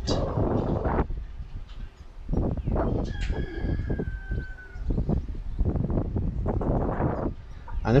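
Uneven gusts of wind noise rumbling on the microphone. About three seconds in, a distant rooster crows once in a long, nearly level call.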